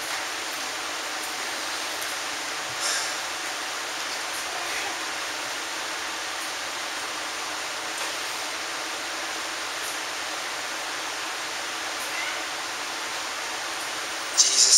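Steady, even hiss of room tone and recording noise, with a few faint brief sounds from the room.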